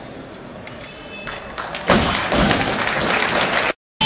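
A barbell dropped onto the lifting platform with a heavy thud about two seconds in, then audience applause and cheering, which cut off suddenly near the end.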